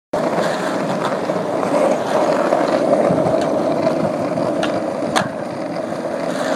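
Skateboard wheels rolling steadily over rough pavement, with a few sharp clicks along the way.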